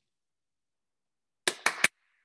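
Dead silence, then near the end three quick sharp taps about a fifth of a second apart.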